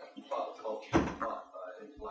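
Indistinct speech in a room, with a single thump about a second in.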